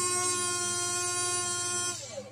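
Huina 1572 RC crane's small electric motor and gearbox whining at one steady pitch as it raises, cutting off just before the end.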